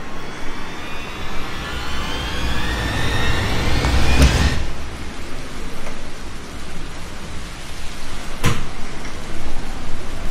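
Horror sound effects: a rising swell that builds to a deep boom about four seconds in, then a second sharp hit a few seconds later, over a steady low rumble.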